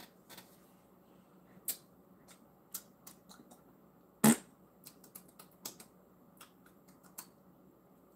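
Faint, irregular small clicks and taps, about a dozen, with one sharper click about four seconds in.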